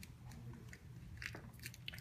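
Faint, scattered small clicks and taps of handling, over a low steady hum.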